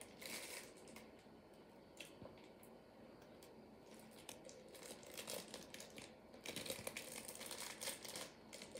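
Faint crinkling of the clear plastic wrap around a peppermint candy shot glass as it is handled, with a denser run of crackles near the end.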